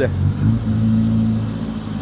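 A 1995 Rover Mini Cooper 1.3i's fuel-injected 1275 cc A-series four-cylinder engine running at low speed as the car is manoeuvred into a parking spot. The engine note swells slightly about half a second in, then eases back.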